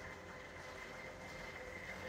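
Faint, steady hum of a distant engine running, with a thin high tone held throughout.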